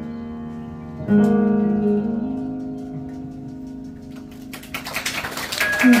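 Stage keyboard playing piano chords that ring out and fade, the last one struck about a second in. Audience applause starts near the end and grows louder.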